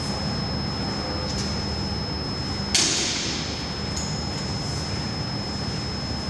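A single sharp smack about three seconds in, with fainter knocks before and after, over a steady low hum and a faint high whine.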